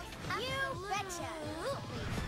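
A cartoon character's drawn-out, cat-like vocal reply, one long call that slides down in pitch and back up, over soft background music.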